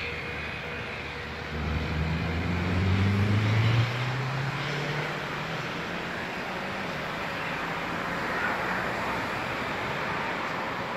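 An engine rising in pitch for about two seconds, then dropping back and running on steadily over a steady background rush.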